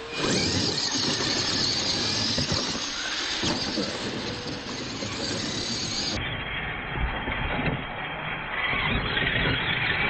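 Radio-controlled monster trucks running flat out across a dirt track, their motors whining high. About six seconds in the sound turns abruptly duller.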